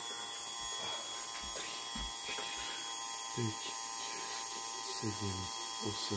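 KTM 690 electric fuel pump running steadily, powered directly and pushing against a pressure gauge with no fuel drawn off, to test the pressure it can build. It gives an even whine with several high tones, starting right at the beginning.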